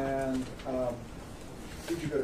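Two short hummed syllables from a man's voice in the first second, flat in pitch, like a drawn-out 'mm-hmm'.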